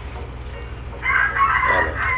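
A rooster crowing, starting about a second in as one long call that falls in pitch at its end.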